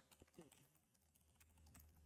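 Faint computer keyboard keystrokes, a few scattered key clicks, as a passphrase is typed in at the prompt.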